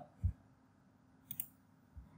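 Faint clicks in a pause: a short low thump shortly after the start, then two quick faint clicks a little past one second in.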